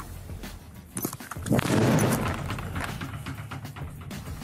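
A hard punch landing on an arcade boxing machine's pad: a loud impact about a second and a half in, with noise trailing off over about a second, over background music.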